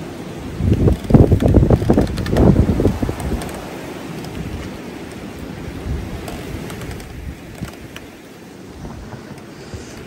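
Storm wind blowing in gusts. For the first few seconds heavy gusts buffet the microphone with a loud rumble, then it settles to a softer, steady rush.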